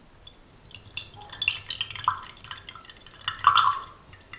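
Lemon juice poured from a glass bowl into a glass mug, trickling and splashing into the glass. It starts about a second in and is loudest near the end.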